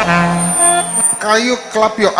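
Church worship music ends on a held chord with a low hum, which cuts off about a second in. A man's amplified voice follows over the microphone.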